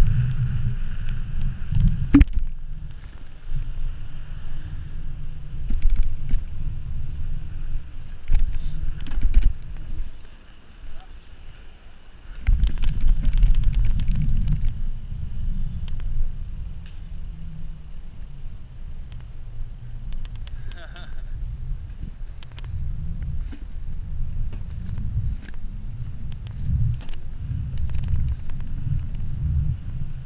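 Wind buffeting the microphone of an action camera on a bicycle descending a paved road, a dense low rumble with frequent small knocks and rattles from the bike over the surface. The rush drops away for about two seconds near the middle, then returns.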